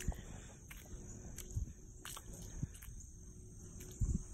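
Faint barefoot footsteps in wet mud: a few soft steps about a second apart, over a steady high insect chirring.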